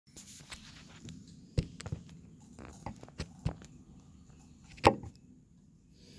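Handling noise as a phone is moved and set down on a pickup truck bed: a series of scattered knocks and rubs, with the loudest knock about five seconds in.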